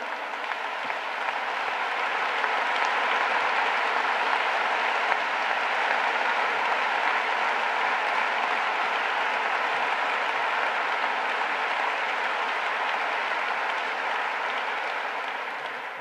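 A large audience applauding steadily. The clapping builds over the first few seconds, holds, and fades near the end.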